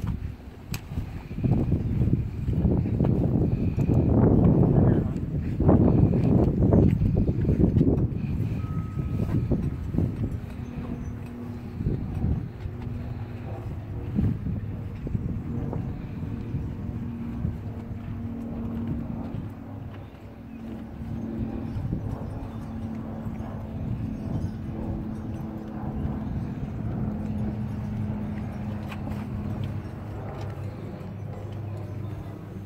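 Rustling and swishing of a fabric trailer cover being tugged and smoothed by hand, loudest in irregular bursts over the first several seconds. From about ten seconds in, a steady low hum carries on underneath.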